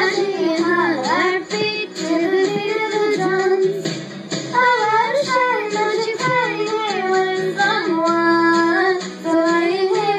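A young girl singing a pop song into a handheld microphone over an instrumental backing track, her melody moving in held notes and steps.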